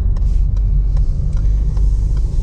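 Low, steady rumble of tyre and road noise heard inside a car's cabin as it drives slowly on a wet lane, with a few faint light clicks.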